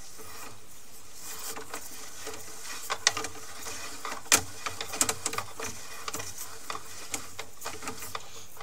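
Sewer inspection camera and its push cable being fed quickly down the drain line: irregular clicks, knocks and scraping over a steady faint hum, with the sharpest knocks about three, four and five seconds in.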